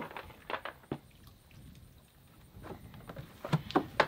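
Plastic bucket and basket of a Lavario portable clothes washer knocking and scraping as wet laundry is handled: a few scattered knocks in the first second and again near the end, with a quieter stretch in the middle.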